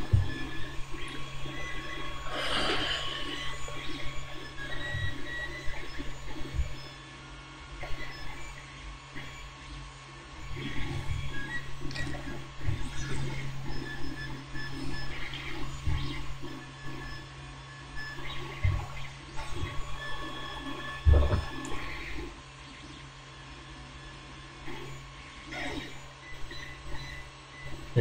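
Light clicks, taps and rustles from handling small model parts and metal tweezers on a cutting mat, scattered through a steady low hum.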